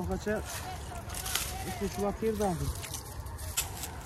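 Quiet voices of people talking in the background, over a steady low rumble, with a few brief rustles or clicks.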